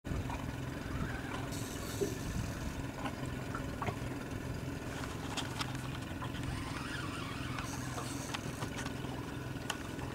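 Boat engine running steadily at low revs, with scattered small clicks and knocks over it.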